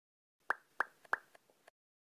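Three short, sharp pop sound effects about a third of a second apart, followed by fainter echoing pops.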